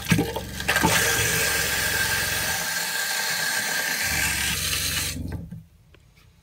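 RV bathroom faucet running on the cold side into the sink, pushing pink RV antifreeze through the cold line during winterizing, with a low hum underneath. The flow is shut off about five and a half seconds in.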